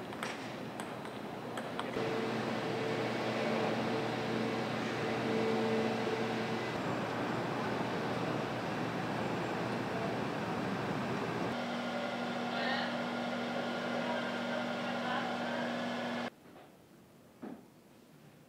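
Steady machine noise with a low hum, like running equipment or ventilation. The hum changes pitch about two-thirds of the way through, and the noise drops away suddenly near the end.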